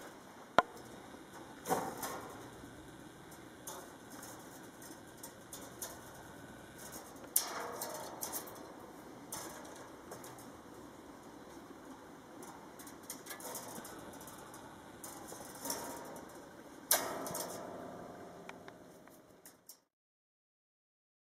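Fencing wire clicking and scraping as the cut tails of a figure-8 knot are wrapped tight around the line wire with a hand tool. A handful of scattered sharp metallic ticks, a few of them ringing briefly, over a faint background that fades out near the end.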